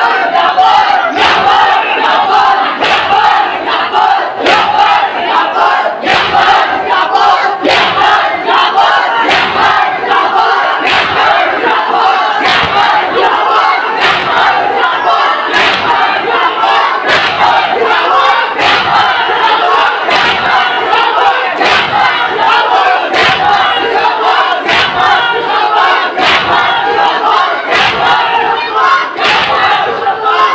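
A crowd of men chanting and shouting loudly together over a steady rhythm of sharp hand slaps on chests: Shia mourners performing matam.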